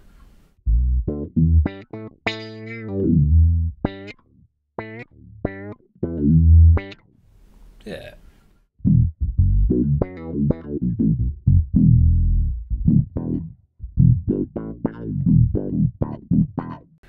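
Electric bass played through a Boss OC-2 octave pedal into a DOD FX25 envelope filter, with the octave-down blended with some dry signal: a riff of short plucked notes, each opening into a wah-like sweep. The playing breaks off briefly about halfway, then picks up again.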